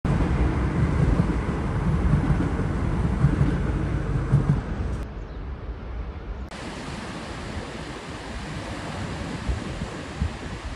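Wind buffeting a phone's microphone, a rumbling rush that is strongest for the first five seconds, then eases to a quieter, steady hiss.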